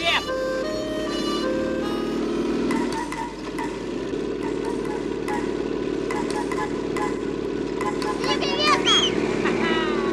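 Motorcycle with a sidecar, its engine running steadily as it rides along a road. Voices come in briefly near the end.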